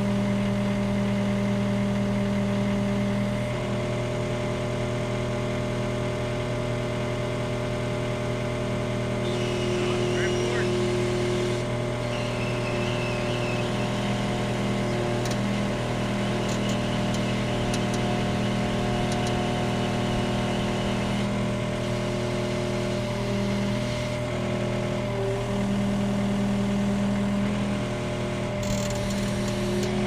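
John Deere 316GR skid steer's diesel engine running steadily, heard from inside the open cab, its pitch shifting slightly a few times as the machine is driven.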